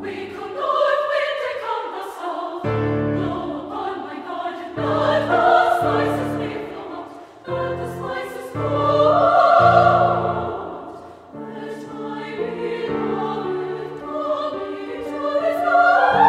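Mixed choir of men's and women's voices singing a classical choral piece in sustained chords. The sound swells to its loudest about nine to ten seconds in and builds again near the end.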